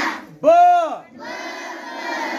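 A crowd of schoolchildren chanting Marathi alphabet syllables aloud together. About half a second in, a loud drawn-out call rises and falls in pitch, then the massed chanting carries on.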